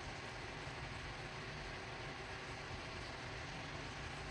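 Faint, steady background hiss with a low rumble: room tone, with no distinct sound rising above it.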